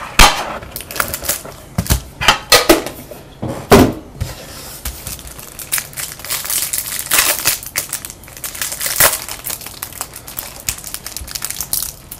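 Trading card boxes and their packaging handled by hand on a table: a few sharp knocks and taps in the first four seconds, then steady rustling and crinkling of wrapper and cards.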